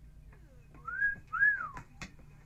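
A man whistling a two-note wolf whistle: a short rising note, then a longer one that rises and falls away.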